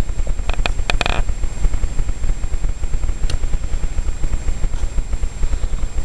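Low, steady rumble of handling noise on a handheld camera's microphone as the camera is swept about, with a few light clicks and a short hiss about a second in.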